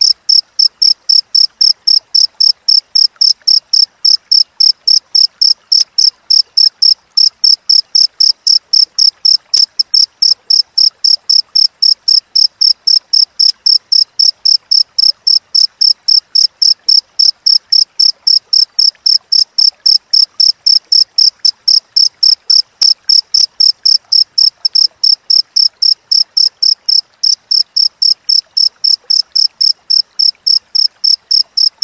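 Cricket chirping: an unbroken run of high, evenly spaced chirps at one steady pitch, about three a second.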